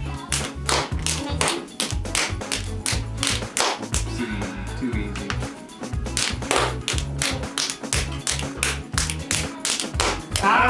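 Rapid rhythmic hand taps and claps, several a second, as two players beat out a rock-paper-scissors hand game, over background music with a steady low beat.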